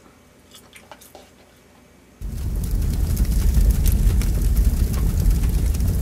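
Faint chewing clicks, then, about two seconds in, an edited-in fire sound effect cuts in suddenly: a loud, bass-heavy rush of noise with crackles.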